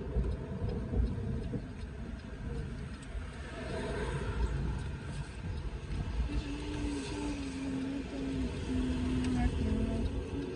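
Car cabin noise while driving slowly: a steady low rumble from the road and engine. From about six seconds in, a faint held tone joins it, stepping slightly up and down in pitch.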